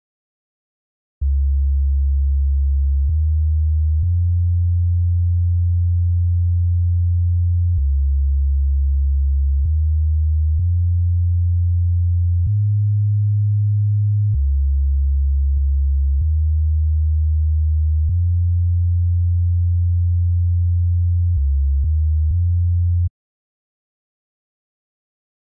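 A deep, sine-like synthesizer bass line from the Caustic 3 music app plays a sequence of long sustained notes, stepping to a new pitch every one to four seconds, with a faint click at each note change. It starts about a second in and cuts off abruptly near the end.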